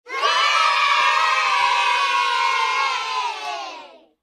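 A group of children shouting and cheering together in one long held shout that slowly drops in pitch and fades out near the end.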